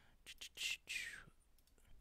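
A man whispering under his breath in several short, breathy bursts while working out a calculation.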